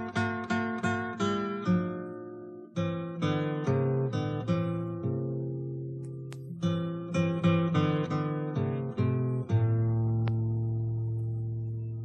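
Acoustic guitar playing an instrumental passage of picked notes and strummed chords, ending on a chord that is left ringing and slowly fades over the last couple of seconds.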